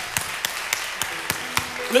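Hands clapping: a string of sharp claps at uneven intervals, celebrating the end of a prayer. A soft sustained guitar note sounds under the claps in the second half.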